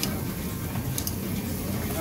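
Meat sizzling on a Japanese tabletop grill plate over a steady low rumble, with two sharp clicks of metal tongs against the plate, at the start and about a second in.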